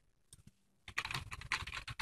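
Typing on a computer keyboard: a couple of faint key clicks, then a quick run of keystrokes from about a second in as a word is typed.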